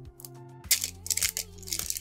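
Pokémon booster pack's foil wrapper crinkling and tearing as it is opened, with a few sharp crackles from about two-thirds of a second in. Quiet background music with held notes plays underneath.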